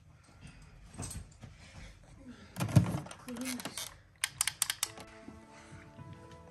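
Scattered light clicks and knocks, with one louder thump about three seconds in and a quick run of sharp clicks a second later. Soft music with held notes comes in near the end.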